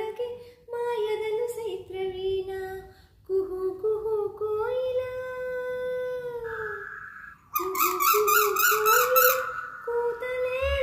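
A woman singing unaccompanied in long, held, gliding notes. Near the end her voice breaks into a quick, evenly repeated warble of about half a dozen pulses.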